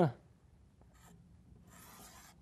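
Chalk drawn across a chalkboard: a brief scratch about a second in, then a longer faint scrape of chalk on slate near the end.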